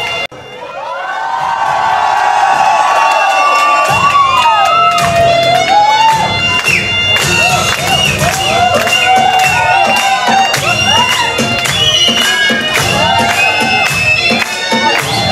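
Dance music with a melodic lead line of bending notes that starts up again right after a brief cut near the start, with a beat coming in about four seconds in; crowd cheering under the music.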